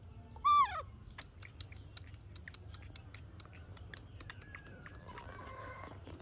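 A baby macaque gives one short, loud call that falls steeply in pitch about half a second in. A run of small wet clicks follows as it sucks on its fingers.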